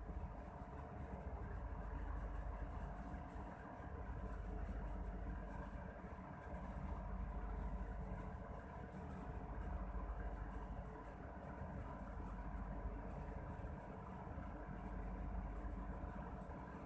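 A steady low hum with a few faint steady tones, swelling and easing slowly, like a fan or motor running in the background.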